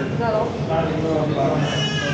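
Indistinct talking at the counter, a voice rising and falling about half a second in and again near the end, over a steady low hum.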